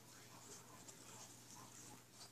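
Near silence: room tone with a low steady hum and faint light scratching.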